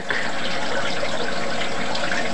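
Pellet stove's fan running with a steady rushing noise and a faint hum while the stove tries to ignite after a failed start.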